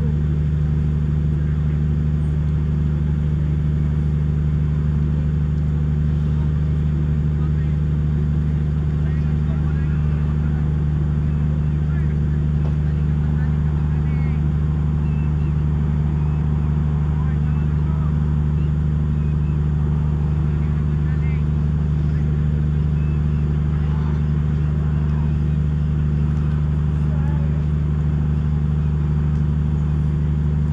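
Steady low machine hum that does not change, with faint distant voices over it.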